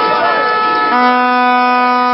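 Crowd voices shouting, then about a second in a plastic stadium horn blows one long, steady, loud note.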